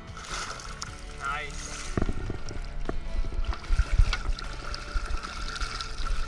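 Water splashing as a netted trout thrashes in a mesh landing net at the side of the boat, with a few dull knocks from handling.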